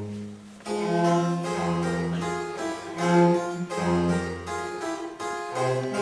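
Baroque aria accompaniment without the voice: a harpsichord plays plucked chords over a cello bass line. It comes in after a brief lull, about a second in.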